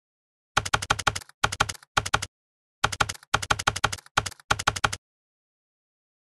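Typing sound effect for an opening title: rapid computer-keyboard keystrokes in about seven short runs, stopping about five seconds in.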